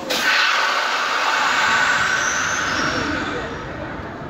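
A drop-tower amusement ride at work: a sudden loud rushing hiss starts at once and fades away over about three and a half seconds.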